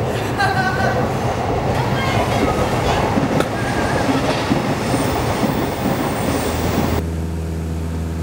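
A train running past, a dense rumble with brief high wheel squeals. About a second before the end the sound cuts abruptly to a steady low hum.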